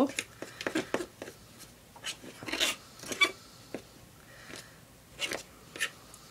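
Stirring gesso thick with pencil shavings in a plastic palette well: irregular scrapes and light clicks of the stirring tool against the plastic.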